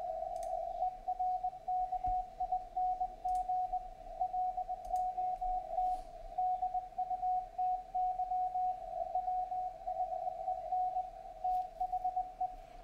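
Morse code (CW) signal on the 40-metre amateur band, received on a software-defined radio: a tone of about 700 Hz keyed on and off in dots and dashes over faint band noise. Keying begins about a second in, after a steady tone.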